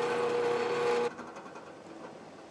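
Benchtop drill press running free with its bit lifted out of the wood, a steady hum. About a second in it is switched off and the sound drops away sharply as the chuck spins down.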